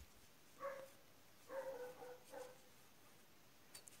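A few faint, short animal calls in quick succession in the first half, over near silence.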